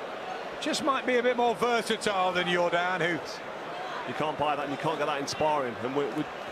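A man's voice, apparently the broadcast's ringside commentary, talking in two stretches over a steady background of arena noise, with a few brief sharp knocks.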